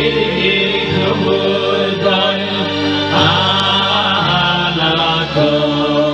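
Male vocal group singing together through microphones, accompanied by sustained chords on a Ketron X1 electronic keyboard; the chords change a few times.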